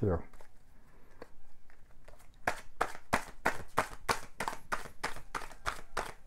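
A deck of Osho Zen Tarot cards being shuffled by hand: faint ticks at first, then from about two seconds in a steady run of quick card swishes, about four a second.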